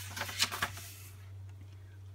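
A hardcover picture book's paper page being turned: a few quick rustles in the first second, then quiet, over a steady low hum.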